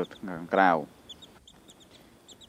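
Young chicks peeping: a run of short, high, faint peeps in the second half.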